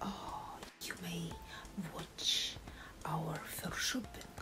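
A woman speaking in a soft, breathy near-whisper, with hissy sibilants and no clear words.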